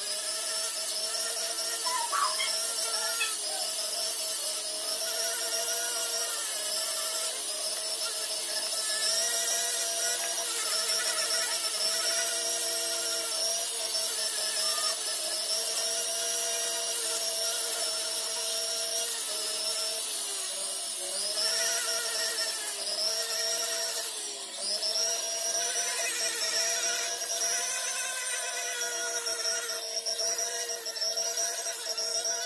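Handheld rotary tool whining steadily as its small bit grinds and finishes a carved silver ring, the pitch sagging briefly now and then as the bit is pressed into the metal.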